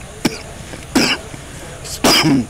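A single short cough about a second in, after a faint click.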